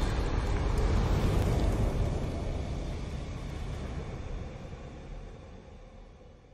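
Deep, noisy rumble of a fiery logo-intro sound effect, the tail of a burst, fading away steadily.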